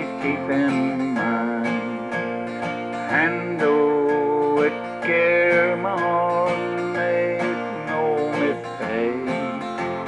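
A man singing a slow country song to his own strummed steel-string acoustic guitar, with long held notes that waver.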